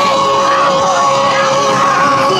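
Loud yosakoi dance music in a rock arrangement, with one long held note, and dancers' shouts over it.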